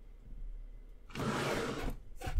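Roll of washi tape being picked up and handled, a brief scratchy noise about a second in that lasts under a second.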